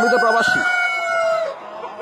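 A tiger-chicken rooster crowing: one long, drawn-out crow that sags slightly in pitch and ends about one and a half seconds in.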